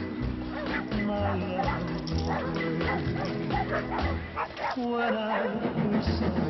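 A dog barking and yipping in short calls, over background music with a regular low beat.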